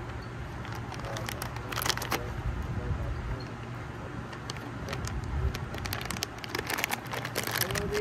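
A plastic snack bag crinkling as it is worked open, a dense run of crackles in the last few seconds, over a low steady rumble.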